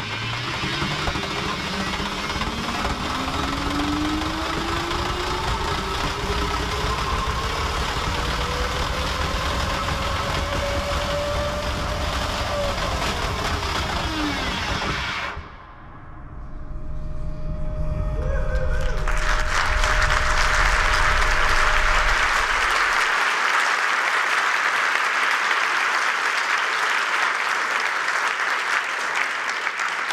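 Onboard sound of the WARR Hyperloop pod's run in the test tube: the electric drive motor's whine climbs steadily in pitch over a rushing noise as the pod accelerates, then drops quickly as it brakes, and cuts off about halfway through. An audience then breaks into applause that swells and runs on loudly.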